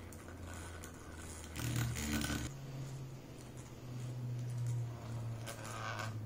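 Small 12 V DC motor, salvaged from a car CD drive, spinning the disc of a homemade gyroscope: a steady low hum that steps up and down in pitch a few times, with light rattling and scraping from the wobbling spring-mounted assembly.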